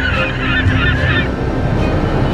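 A flock of birds calling together in a dense chatter of many short, overlapping calls, which stops abruptly just over a second in, over background music.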